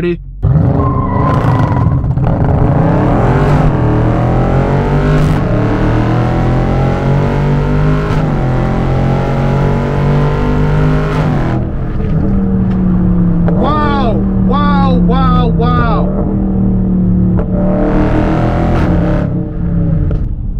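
Dodge Charger Scat Pack's 6.4-litre 392 HEMI V8 at full throttle from a standing launch, heard from inside the cabin. The revs climb and drop back at each upshift, about four times. A bit over halfway through it settles to a steadier, lower drone.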